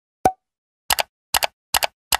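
End-screen animation sound effects: a single short pop, then three quick double clicks about 0.4 s apart, like a computer mouse clicking.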